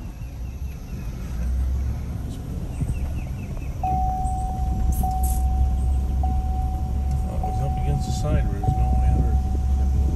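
Car cabin road noise: the low, steady rumble of the car's tyres and engine while driving. About four seconds in, a steady single-pitched tone begins and holds, with a slight break about once a second.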